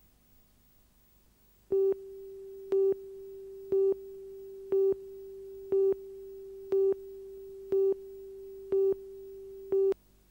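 Electronic broadcast tone over a station ident card: a steady single-pitched tone with a louder beep once a second. There are nine beeps in all, starting about two seconds in, and the tone cuts off suddenly near the end.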